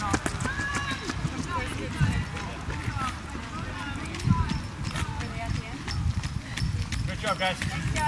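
Running footsteps on a wet asphalt road: quick, repeated footfalls of runners passing close by, with faint spectator voices behind. A voice comes in clearly near the end.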